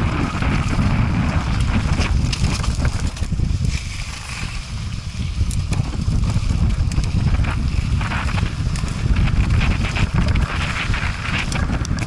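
Mountain bike descending a rocky, gravelly trail: wind buffets the helmet-mounted camera's microphone in a heavy low rumble, with tyre crunch and sharp knocks and rattles from the bike as it goes over stones and rock steps. The rush eases briefly about four seconds in.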